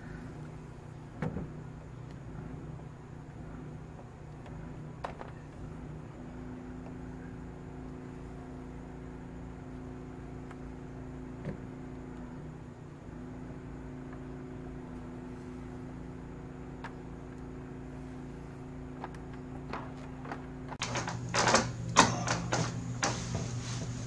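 Vacuum suction-cup glass lifters being set on a window pane, a few single sharp clicks over a steady low hum; near the end a quick run of loud knocks and rattles as the glass and sash are handled.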